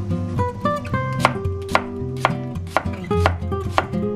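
A kitchen knife slicing a halved onion on a plastic cutting board, with sharp cuts about twice a second from about a second in. Acoustic guitar background music plays throughout.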